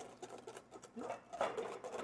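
Wire whisk beating egg yolks and water in a stainless steel bowl over a double boiler: faint, rapid light ticking and scraping of the wires against the bowl, the first stage of a hollandaise.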